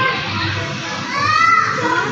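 Children's voices and play noise over background music, with one child's high voice rising and falling about a second in.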